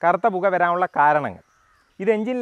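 Only speech: a man talking, which stops about one and a half seconds in and leaves a short pause.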